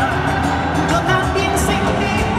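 A live salsa band playing loudly with a male lead singer, heard from the audience.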